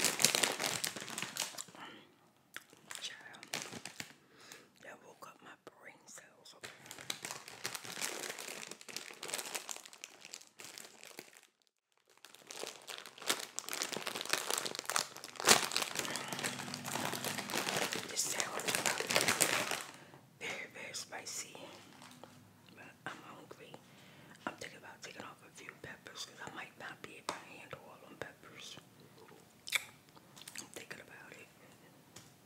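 Close-miked crinkling and rustling of a paper or plastic food wrapper. It comes in spells, loud for the first two seconds and again from about 12 to 20 seconds in, softer in between, with a moment of dead silence just before 12 seconds.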